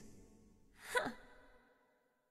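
The reverb of the music and singing fades out, then about a second in comes one short, faint, breathy vocal sound with a quickly rising pitch, like a sigh or gasp. It trails off into silence.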